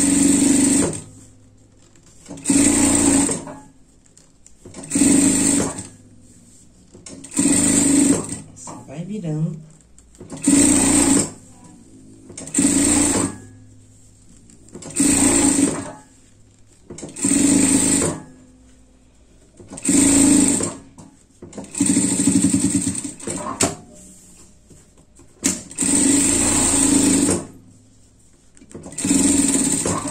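Industrial lockstitch sewing machine running in short bursts, about twelve runs of one to two seconds each with brief stops between, as a binding edge is topstitched.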